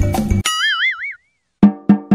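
Drum-backed music stops abruptly, then a cartoon boing sound effect with a wavering pitch plays. After a brief silence a quickening run of pitched wood-block knocks starts, like a bouncing ball settling.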